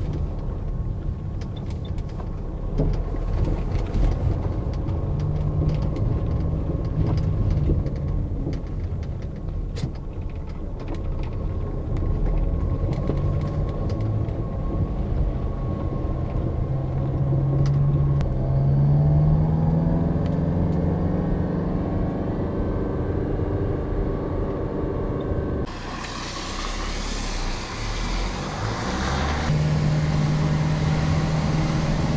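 Car engine running while driving, its pitch rising as the car picks up speed in the middle of the clip. Small scattered clicks run throughout, and near the end a sudden hiss joins in.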